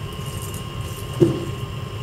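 Steady low hum of a drink vending machine running, with one short knock about a second in.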